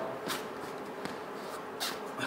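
Two brief, soft swishes about a second and a half apart from an athlete exercising through a sprawl drill, over a faint steady background.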